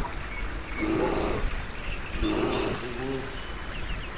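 Fantasy forest-grove ambience: two deep, bear-like growling calls, one about a second in and one just past the middle, with small bird chirps above them.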